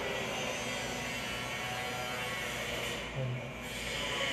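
A steady electrical hum with hiss, and a short low voice sound a little after three seconds in.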